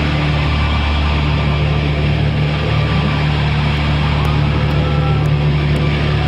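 Live rock band through the soundboard: heavily distorted electric guitars and bass holding one low chord in a loud, steady, wall-of-sound drone.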